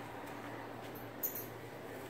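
Steady room noise with a few faint, sharp, high clicks, the clearest a little over a second in.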